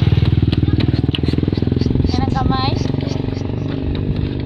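Motorcycle engine running steadily, its firing pulses even throughout, with a child's voice heard briefly a little past halfway.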